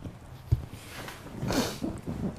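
A person crying: a couple of low catching breaths, then a breathy, wavering sob about a second and a half in.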